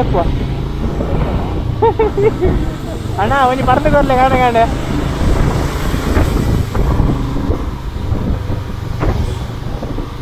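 Royal Enfield Himalayan single-cylinder engine running steadily under way, heard from the rider's helmet with wind and road noise over the microphone. A voice briefly hums or calls out about two seconds in and again from about three to four and a half seconds.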